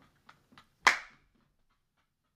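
A single sharp smack about a second in, loud and brief with a short tail, among faint breathy catches of stifled laughter.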